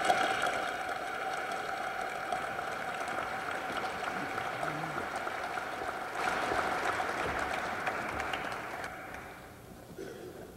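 Audience applauding steadily, swelling about six seconds in and dying away near the end.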